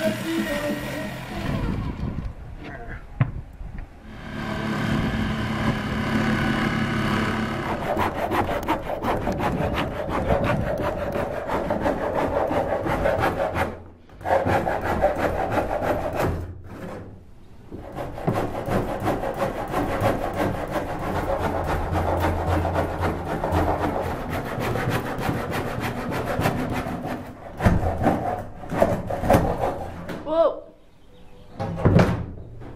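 Continuous rasping of a tool working wood, stopping briefly twice about halfway through, with a few sharp knocks near the end.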